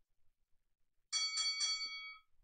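Bell sound effect from the workout rounds timer app, a quick run of ringing strikes starting about a second in, signalling that the countdown has ended and the round starts.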